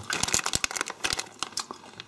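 A plastic packet of Cadbury Mini Eggs crinkling as gloved hands handle it: a run of quick, irregular crackles.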